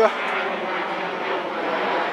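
An airplane flying overhead: a steady engine drone.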